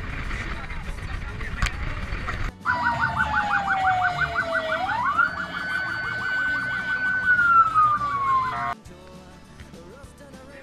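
For the first couple of seconds there is a steady rush of road and wind noise from a moving vehicle. Then an electronic vehicle siren sounds for about six seconds: one tone slides down, jumps up, holds and slides down again, while a faster warble pulses about eight times a second. It cuts off suddenly.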